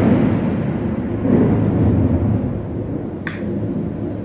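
Thunder: a loud, deep rumble that slowly fades, swelling again about a second and a half in.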